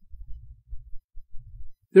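A low, uneven bass throb with nothing higher above it, a background bed lying under the narration. Speech begins right at the end.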